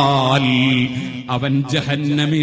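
A man's voice chanting Arabic Quranic verse in a melodic recitation style, holding a long drawn-out note that ends about half a second in, followed by short broken syllables.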